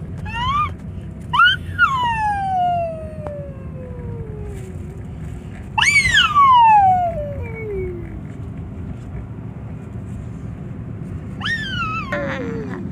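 A small child's high-pitched squeals, each jumping up quickly and then sliding slowly down in pitch over two to three seconds, the loudest about six seconds in and another starting near the end. Under them runs the steady low rumble of the moving car.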